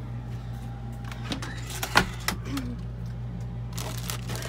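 A sharp click about halfway through, with a few lighter knocks around it, as a bathroom cabinet door is opened and things inside are handled, over a steady low hum.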